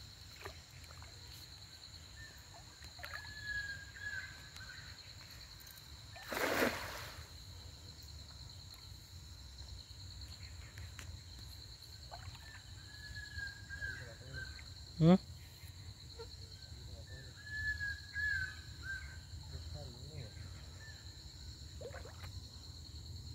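Riverside ambience: a steady high insect drone, with bird calls at intervals and one short splash in the water about six seconds in. A brief exclamation comes near the middle.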